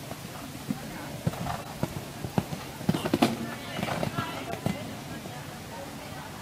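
Horse cantering on a sand arena, its hoofbeats coming as a run of dull, uneven thuds, with a sharper knock about three seconds in.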